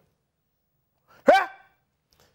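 Silence, then a little over a second in one short, sharp vocal call whose pitch falls quickly.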